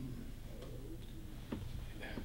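A couple of faint ticks over a low steady room hum.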